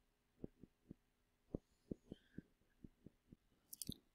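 Faint, irregularly spaced soft clicks of a computer mouse, about a dozen, with a quick cluster near the end, over near silence.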